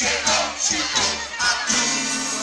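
Live rock band playing, drum hits and bass notes, with an audience shouting along over the music.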